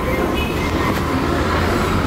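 Steady low rumble of a metro train running past.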